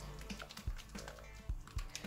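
Slime mix of glue activated with baking soda and contact-lens solution being stirred with a small spoon in a small plastic tub, giving a few scattered clicks and scrapes against the plastic. The stirring noise is the sign that the slime base has not yet formed; it gets quieter once it does. Soft background music plays underneath.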